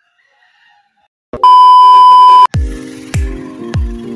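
A loud, steady electronic beep lasting about a second, then background music with a steady kick-drum beat starts.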